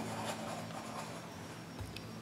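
Faint scratching of writing on a small handheld chalkboard, as a word is written out in strokes.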